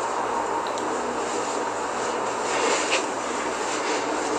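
A steady rushing noise with a faint constant tone in it, and a couple of soft short sounds about three seconds in.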